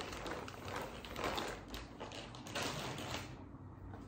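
Faint rustling and light tapping of items being handled and set down on a table, quieter for the last half second or so.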